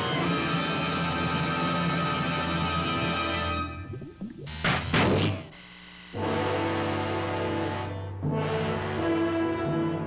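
Orchestral film score with held chords. About four seconds in the music drops away for two short, sharp noises half a second apart, then returns.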